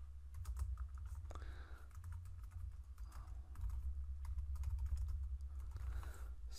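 Computer keyboard typing: irregular key clicks as a short command is typed, over a low steady hum.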